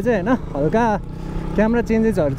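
A man's voice talking, with the steady running of a motorcycle and riding noise beneath it; the voice pauses briefly just past the middle.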